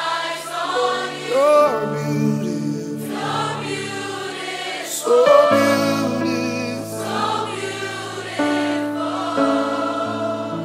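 Live gospel worship music: a choir singing long, sliding notes, joined about halfway through by deep sustained chords underneath.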